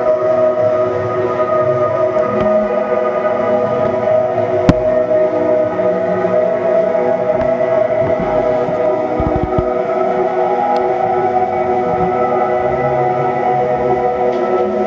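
A live band plays a slow, droning ambient passage of steadily held keyboard and guitar chords. A single sharp click cuts through about five seconds in.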